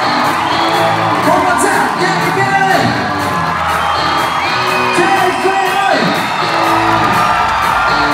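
Live pop-rock band playing with singers on vocals, and whoops and cheers from the crowd close to the microphone.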